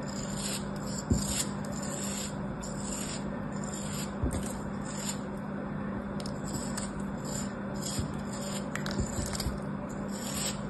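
Utility knife blade cutting and scraping through a moulded block of kinetic sand: a run of short scraping strokes, about one or two a second, with a couple of sharper knocks about one and four seconds in.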